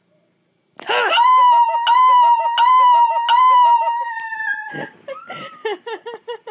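A woman's high-pitched scream, held steady for about four seconds from about a second in, then breaking into short, quick bursts of laughter.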